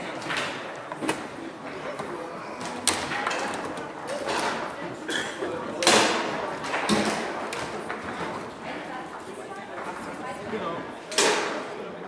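Table football rally: sharp clacks and knocks of the ball struck by the rod figures and hitting the table walls, with rod handles rattling, a few seconds apart. The loudest hit is about six seconds in, with another strong one near the end, over background voices in a large, echoing hall.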